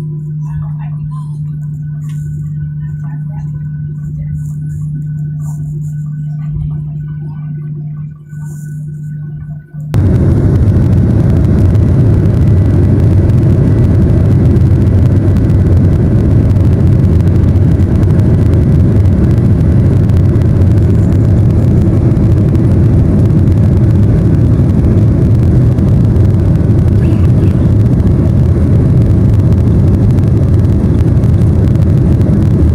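Jet airliner engines heard from inside the cabin: first a steady low hum with a thin high tone, then about ten seconds in the sound jumps to a much louder, steady rush as takeoff thrust is set for the takeoff roll.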